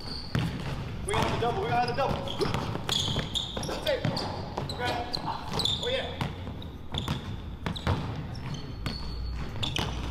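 Basketball being dribbled on a hardwood gym floor, a run of repeated bounces.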